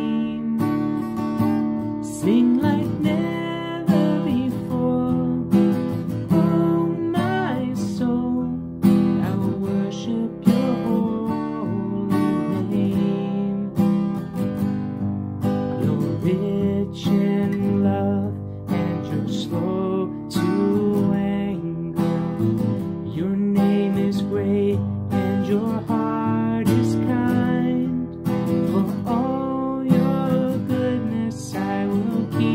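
A man singing a worship song while strumming a steel-string acoustic guitar in a steady rhythm.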